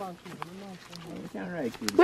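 Indistinct low voices talking quietly, with one sharp click near the end.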